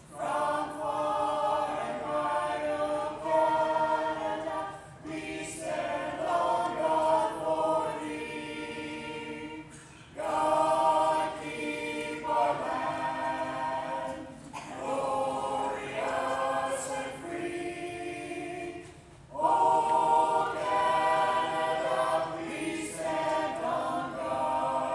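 Klapa singers, a small group of women and men, singing a national anthem a cappella in several voices, in phrases broken by short pauses for breath every four to five seconds.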